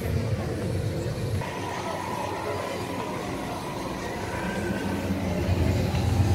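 Ambient noise of a crowded outdoor walkway with a low rumble, with a faint steady tone coming in about a second and a half in.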